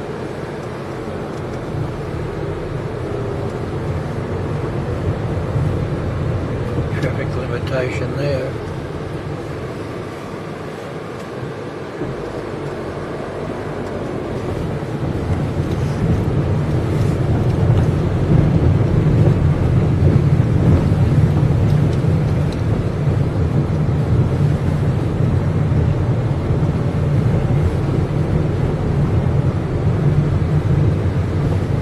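Inside a car's cabin: the engine and tyres rumble steadily at low speed, growing louder about halfway through.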